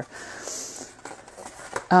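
Folded heavy watercolour paper rustling and sliding as a concertina book's panels are handled and opened out: a soft hiss that fades after about a second.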